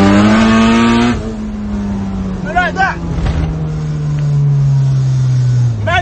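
Honda Civic EK9 Type R's four-cylinder VTEC engine revving hard, heard from inside the cabin. About a second in it eases off, and its pitch sinks slowly as the revs fall.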